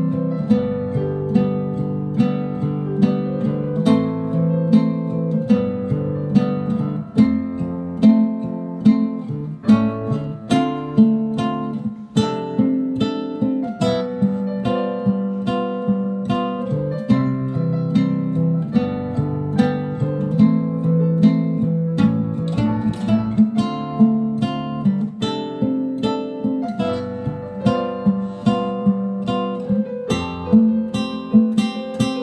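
Classical guitar played with the fingers: a continuous run of plucked notes and chords in a steady rhythm.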